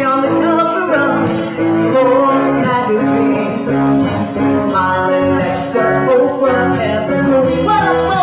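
Live band playing: a woman singing over electric guitar, bass guitar and a drum kit, with a steady cymbal beat.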